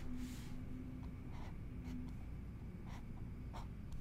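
Faint scratches and taps of a stylus on a drawing tablet as a short shape is drawn, a few brief strokes over low steady hiss.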